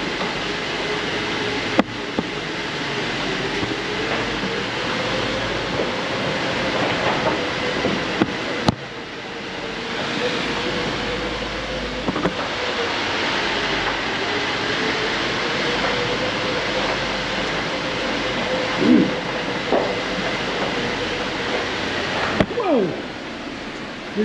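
Lifted Jeep crawling slowly through a narrow mine tunnel: engine and tyres on rough ground give a steady running rumble with a wavering hum. A couple of sharp knocks stand out, about two seconds in and again about nine seconds in.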